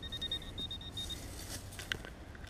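Metal detector beeping rapidly, about nine short high beeps a second, the signal of a coin right under the coil; the beeping stops about a second in. Near the end comes the scrape and a sharp click of a hand digger working through dry grass.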